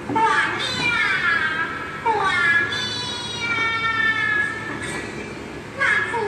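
A high-pitched, childlike voice calling out in wavering cries that glide up and down, with one long held cry in the middle.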